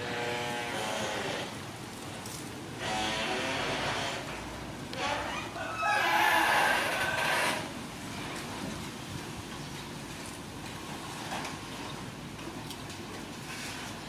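A rooster crowing several times in the first half, the loudest crow about six seconds in.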